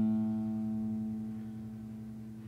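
A single note on an acoustic guitar, plucked just before, rings out at one steady pitch and slowly fades while the guitar is being tuned.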